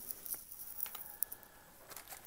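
Trading-card packs and a cardboard box-topper card being handled: soft rustling of plastic pack wrappers with a few light clicks and taps.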